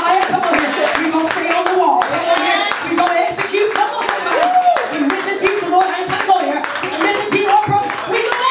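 Steady rhythmic hand clapping from a church congregation, with raised voices calling out over it.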